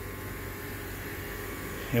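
Compressor and blower of a makeshift heat-pump unit running steadily: an even hum of motor and moving air.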